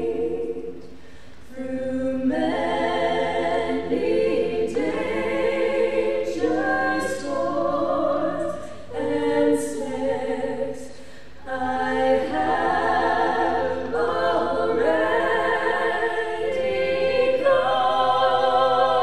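Three women singing a cappella together, in sung phrases with two short breaks, about a second in and about eleven seconds in.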